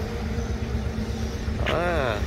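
Honda Wave 110 motorcycle's single-cylinder four-stroke engine idling steadily, with a man's voice coming in near the end.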